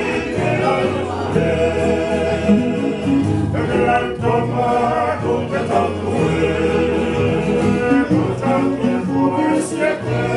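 A group of men singing a Tongan song together in harmony, with an acoustic guitar strummed along.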